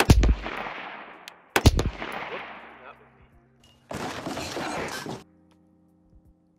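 Two shots from a 5.56 AR-style rifle about a second and a half apart, each a sharp crack with an echo dying away over about a second. Near the end, a loud rush of noise for just over a second that starts and stops abruptly.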